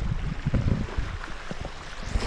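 Wind buffeting the microphone in uneven low rumbling gusts over the steady wash of small lake waves on the shore.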